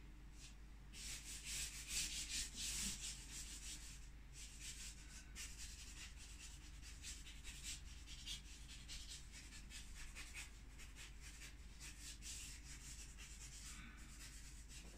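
Charcoal stick scraping and rubbing across a canvas in repeated strokes. The strokes are heavier and more spaced for the first few seconds, then come as a quick run of short, lighter strokes.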